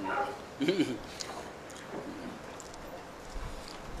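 A man's voice groaning briefly in pain, twice, the second fainter, as a sore body is pressed during treatment.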